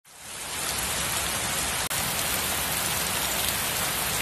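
A steady, even hiss like rain. It fades in at the start and drops out for an instant near two seconds in.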